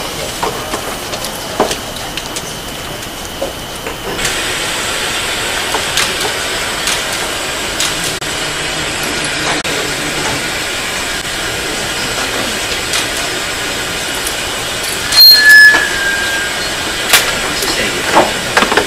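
Steady hiss of white noise from a courtroom sidebar masking system, covering a bench conference between the judge and counsel. It gets louder about four seconds in. A few loud knocks come near the end.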